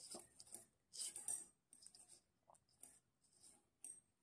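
Faint rustling and light clicks of knitting needles working fabric-strip yarn as stitches are picked up, the strongest rustle about a second in.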